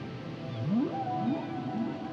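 Whale calls laid over background music: three rising moans about half a second apart, with a higher wavering call above them, over sustained music chords.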